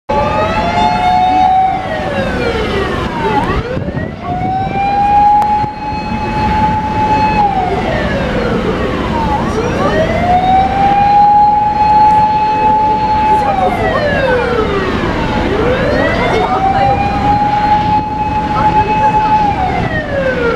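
Fire engine siren wailing loudly in long repeating cycles, about four in all, each a quick rise to a steady held tone followed by a slow fall.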